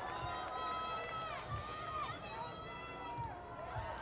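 Distant high-pitched shouts and calls from people across an open stadium, drawn out and gliding up and down in pitch, over a low outdoor rumble.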